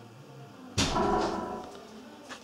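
A short whoosh with a ringing tone, starting suddenly about three quarters of a second in and fading over about a second, played through the all-in-one PC's speakers as a YouTube review video of the Dell XPS 27 begins.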